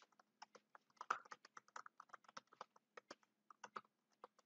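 Computer keyboard typing: a faint, irregular run of key clicks, several a second.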